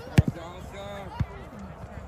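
Two thuds of a soccer ball being kicked: a sharp, loud one just after the start and a softer one about a second later.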